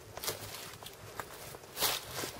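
Footsteps in dry fallen leaves, two main steps with small rustles and crackles between them, the louder step near the end.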